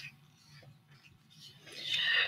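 Quiet room tone with a couple of faint ticks, then an intake of breath as a woman's voice starts again near the end.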